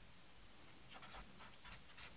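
Pen writing on paper: a few short, faint scratching strokes about a second in and again near the end.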